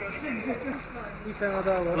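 Speech: a man speaking in Turkish, coaxing softly ("At elini... güzel, güzel, gel"), over a steady background hiss.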